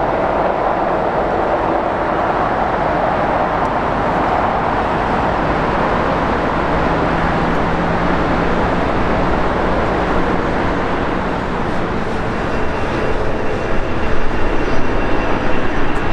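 Jet airliner engines running on the airport ramp: a steady roar, with a thin high whine that comes in over the last few seconds.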